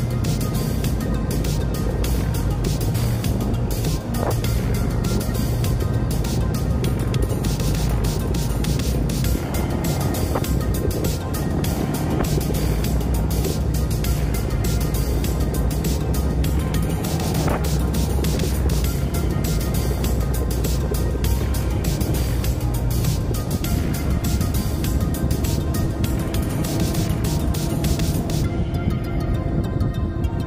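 Background music laid over the steady running of a motorcycle engine, with road and wind noise, on a dirt road.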